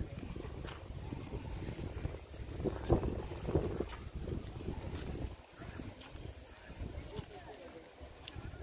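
Footsteps walking across bare rock, over a low rumble on the microphone.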